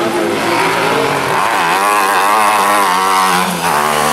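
Small single-seater race car's engine revving hard under throttle, its pitch swinging up and down from about a second and a half in as the car slides through loose dirt and powers back onto the track.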